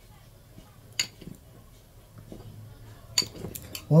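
Metal fork clinking against a ceramic bowl as sausages are worked with it: one sharp clink about a second in, then a quick cluster of clinks near the end.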